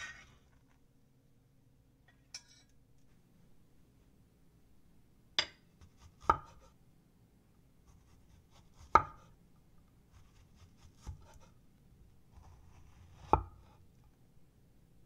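Broad-bladed kitchen knife halving strawberries on a wooden cutting board: about five sharp knocks of the blade on the board, a second or two apart. Just before them, right at the start, there is a brief scrape of a spatula on a pan.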